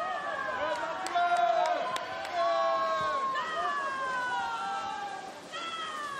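Spectators cheering on racing swimmers: several high voices in long, drawn-out yells that overlap and mostly fall in pitch, loudest in the first half.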